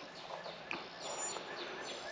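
Outdoor background with a bird chirping: a quick run of short repeated chirps, about five a second.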